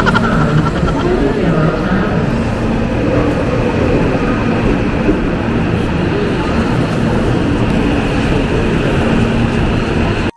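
Electric commuter train pulling in alongside the platform: a loud, steady rumble of wheels and running gear with a low hum, and a few wavering higher tones in the first couple of seconds.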